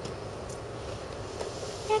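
Steady background hiss (room tone) with two faint clicks, one about half a second in and one about a second and a half in; a woman starts to speak right at the end.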